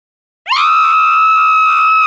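A long, loud, high-pitched wail that starts suddenly about half a second in with a quick upward slide, then holds one steady pitch and begins to slide down right at the end.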